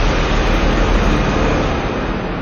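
Steady loud rushing noise with a deep rumble underneath, with no clear tone or rhythm.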